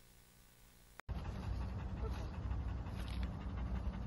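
Near silence for about a second, then a Belgian Malinois panting over a steady low rumble.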